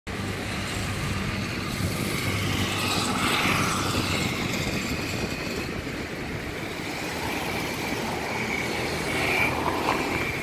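Street traffic: a steady rumble of passing vehicles, with brief rising and falling whines about three seconds in and again near the end.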